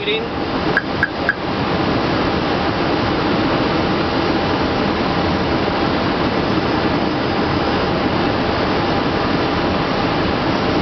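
Steady rushing air noise inside an Airbus A320 cockpit on final approach, with a few short clicks about a second in.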